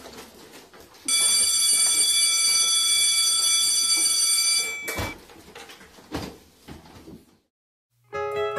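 Electric school bell ringing steadily for about three and a half seconds, starting about a second in, over faint room noise with scattered clicks. A single sharp knock follows just after the ringing stops.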